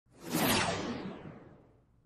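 A whoosh sound effect: one burst of rushing noise that swells quickly and then fades over about a second and a half, its hiss dying away from the top down.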